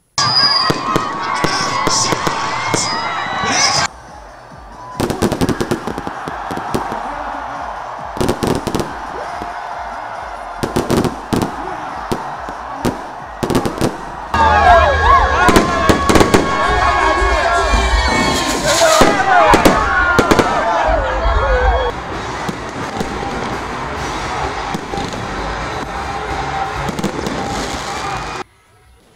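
Fireworks going off: a dense run of bangs and crackles, loudest through the middle stretch, with people's voices shouting underneath.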